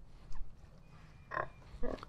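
Pigs grunting briefly, twice, as sows and piglets root on the pasture.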